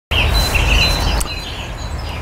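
Garden birds chirping in short repeated high calls over a loud, steady outdoor hiss and low rumble.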